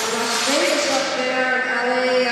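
School wind band playing held chords, with flutes and clarinets among the winds; about half a second in, one line glides up to a new note.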